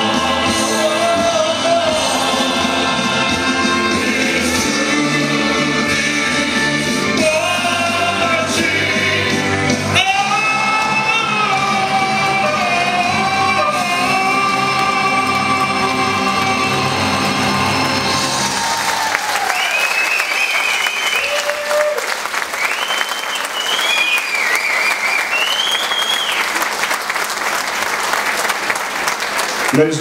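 A band and singers perform a song that ends on a long held final note, then give way to the crowd applauding and cheering from about nineteen seconds in.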